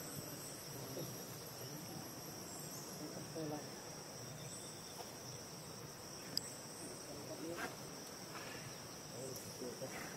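Steady high-pitched insect chorus: a continuous drone of several even tones, with a single sharp click a little over six seconds in.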